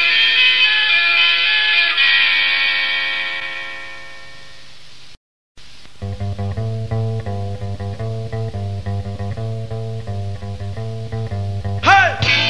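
Punk rock recording: one song's final chord rings out and fades, then a brief gap of silence about five seconds in. The next song starts about a second later with a repeating electric guitar and bass riff, and a louder entry comes right at the end.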